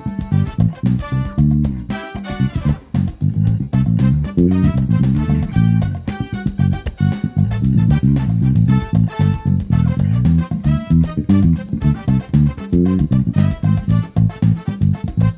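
Ibanez SRMD200 32-inch medium-scale electric bass played fingerstyle: a busy line of quick, changing low notes over a backing track.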